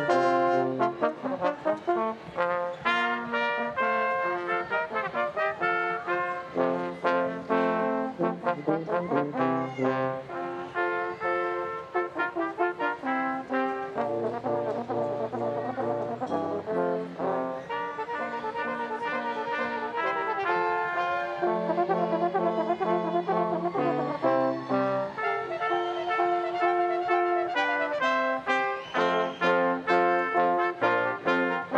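Brass ensemble playing recessional music, a lively piece of many short, quickly changing notes with trumpets and trombones.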